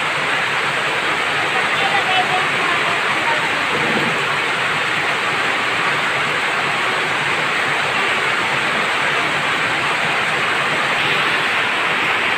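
Heavy rain falling without a break, a loud, even hiss.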